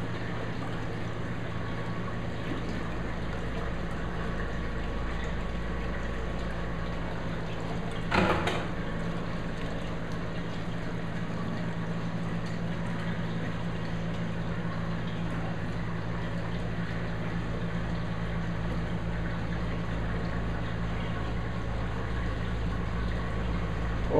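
Reef aquarium equipment running steadily: pump hum with the wash of circulating water. A brief knock comes about eight seconds in.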